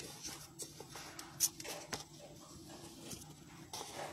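Phone handling noise: scattered light clicks and taps of fingers on a handheld phone, the sharpest about a second and a half in, over a faint steady room hum.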